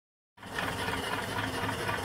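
Small single-cylinder steam engine (2.75-inch bore, 4-inch stroke) running steadily on its vertical boiler. The sound starts about a third of a second in.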